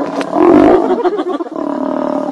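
A lion growling, loudest in one brief rough burst about half a second in, over a steady hum.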